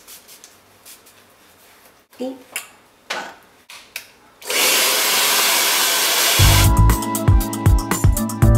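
Handheld hair dryer switched on about halfway through, blowing with a loud, steady rush of air. A couple of seconds later, background music with a heavy regular beat comes in over it.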